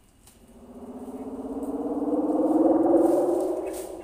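A sustained musical tone swells up over about two and a half seconds and fades again, a lead-in to background guitar music.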